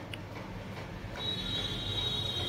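A steady low hum, joined about a second in by a thin, high-pitched steady whine.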